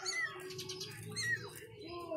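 Tiny kittens mewing: short, high-pitched cries that rise and fall. Two stand out, one near the start and one just past the middle.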